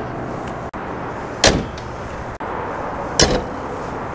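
Pickup-truck hoods being slammed shut: two sharp thumps, one about a second and a half in and one a little after three seconds, over steady background noise.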